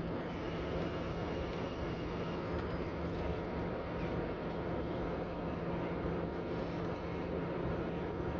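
Steady engine drone and road noise heard from inside a moving city bus, with a constant low hum and no sudden events.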